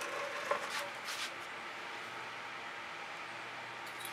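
Quiet steady background hiss with a few faint, brief handling noises in the first second and a half as a stretched canvas is gripped and tipped by hand.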